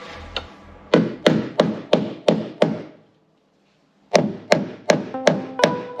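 A steel hammer knocking on a wooden block held against the sheet-metal edge of a van's wing, in a steady run of blows about three a second with a gap of about a second in the middle. The blows are knocking the panel edge back so the sagging sliding door no longer catches on the wing.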